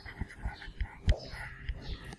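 Faint whispered talk in a classroom, with scattered soft taps and knocks, the sharpest about a second in.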